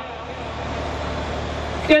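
Steady rushing background noise with no clear pitch, filling a pause in a man's speech over a loudspeaker microphone; his voice returns at the very end.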